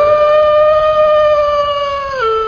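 A wolf howl: one long call that rises at the very start and then holds steady.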